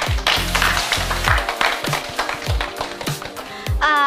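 A group of people applauding over background music with a steady bass beat; the clapping thins out near the end.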